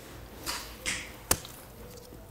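Gloved hands handling IV supplies at a forearm: two short soft rustles, then a single sharp click, the loudest sound, a little over a second in.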